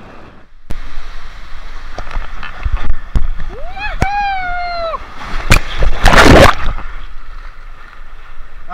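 Inflatable tube running down a waterslide chute in rushing water, with scattered knocks. A rider's long yell comes about four seconds in, and the loudest sound, a big splash, comes about six seconds in as the tube drops into the water channel at the bottom.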